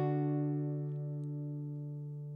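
Acoustic guitar's last strummed chord ringing on and slowly fading at the end of a song.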